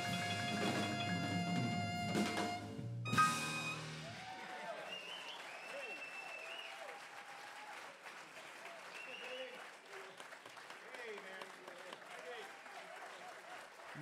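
A jazz quartet of piano, alto saxophone, electric bass and drums holds its closing chord and ends the tune on a sharp final hit about three seconds in. Then the audience applauds, with cheering voices.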